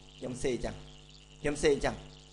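A man's voice saying two short spoken phrases, the first a few tenths of a second in and the second about a second and a half in, over a steady low electrical hum and faint hiss.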